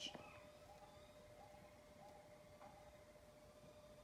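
Near silence: room tone with a faint steady hum. There is a soft click right at the start and a few faint, brief sounds after it.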